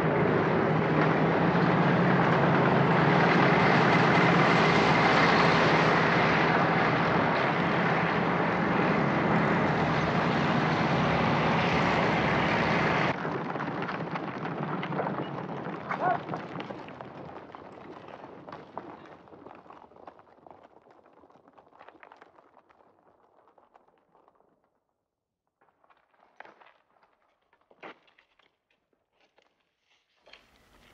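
Engines of a column of vintage military trucks and an open car running together, a dense steady drone with a low hum, cutting off abruptly about thirteen seconds in. Then hoofbeats of a troop of galloping horses, fading away into near quiet, with a few faint knocks near the end.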